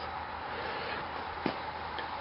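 Steady background hiss of outdoor ambience, with one small click about one and a half seconds in.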